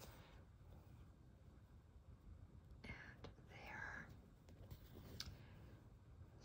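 Near silence, broken about halfway through by a soft, hissy rasp lasting a second or so as embroidery yarn is drawn through the wool fabric, with a few faint ticks.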